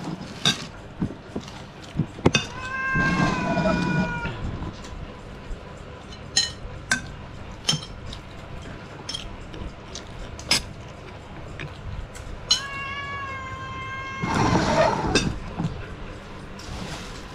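Metal spoons clinking sharply against ceramic plates and a steel bowl during a meal. Two drawn-out, high, meow-like calls sound over them, one a few seconds in and one near the end, each about a second and a half long.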